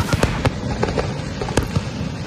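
Fireworks and firecrackers going off: a quick, irregular run of sharp bangs and cracks, about a dozen in two seconds, over a continuous crackling haze.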